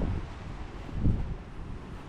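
Wind buffeting the microphone: a low, rumbling rush with one brief soft swell about a second in.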